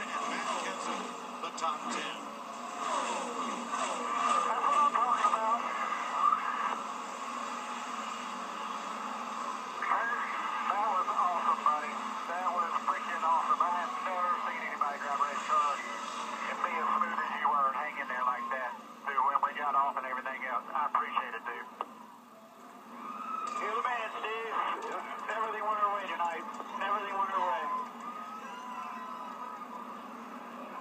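Voices from a television race broadcast, heard thin and muffled through the TV's speaker, with radio-style chatter of the kind played from a team's two-way radio after a win.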